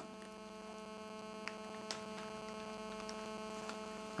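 Low, steady electrical hum with a few faint ticks about one and a half and two seconds in.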